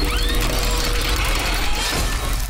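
Animated title sting: a loud, dense burst of music and sound design with a heavy deep bass rumble, a few rising swept tones near the start and a held mid tone.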